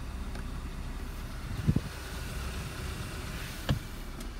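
A Hyundai i30's engine idling in Park, heard from inside the cabin as a steady low hum. Two light knocks, about two seconds apart.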